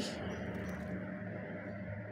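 Faint steady hiss of a pot of water heating on the stove, with chunks of beef just added.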